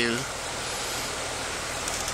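Steady, even hiss of background noise with nothing else standing out. A spoken word trails off at the very start.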